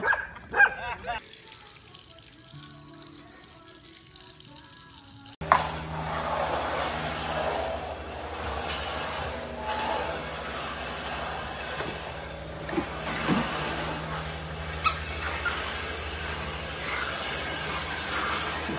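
Laughter cuts off in the first second. About five seconds in, a steady background hum begins, with a few short, faint sounds from golden retriever puppies in a wire pen.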